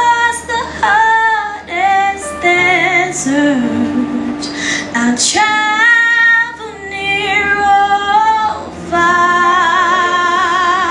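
A young woman singing a solo church song into a handheld microphone, holding long notes with vibrato and breathing between phrases.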